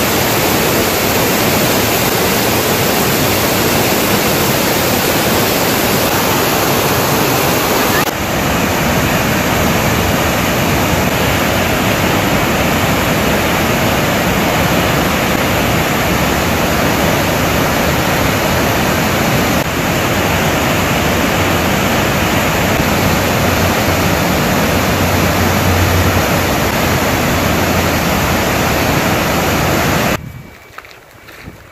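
Loud, steady rush of a river pouring over a rocky cascade, with slight shifts in the sound about eight and twenty seconds in.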